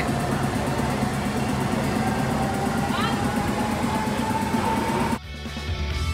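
Outdoor street ambience with voices and a faint steady tone, cut off abruptly about five seconds in by rock music with guitar.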